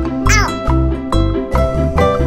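Cheerful children's background music with a steady repeating bass pattern. About a third of a second in comes a short, high, squeaky sliding cartoon sound effect.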